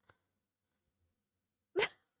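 A faint click, then near the end one short, sharp burst of a person's breath, like a hiccup.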